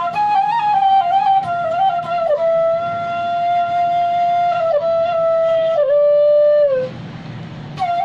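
Bamboo bansuri flute playing a slow, ornamented solo melody: short stepped notes, then a long held note, and a phrase that slides down and stops near the end. After a breath pause of about a second, the next phrase begins.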